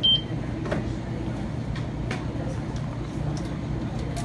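A single short, high electronic beep right at the start, over a steady low hum with a few faint clicks.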